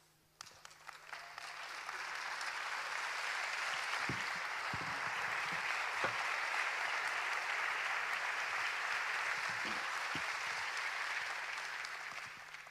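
Congregation applauding, swelling over the first couple of seconds, holding steady, then beginning to die away near the end.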